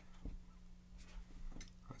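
A few faint, short strokes of a marker writing on a whiteboard, over a steady low hum.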